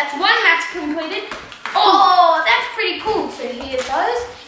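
Children's voices, talking quickly and excitedly, with a few sharp clicks and crackles mixed in.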